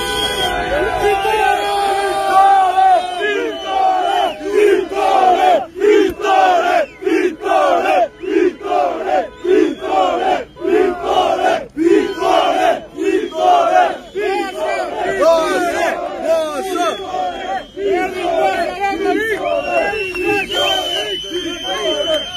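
A crowd of supporters chanting the opposition leader's name together: a long drawn-out shout at first, then rhythmic chanting in a steady beat.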